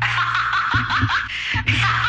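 Novelty Hillary Clinton laughing pen playing its recorded cackling laugh through a tiny speaker: a thin, tinny run of short rising 'ha' syllables, several a second.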